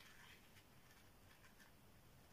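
Near silence, with a few faint rustles from the small paper packet of a bar necklace being unwrapped by hand.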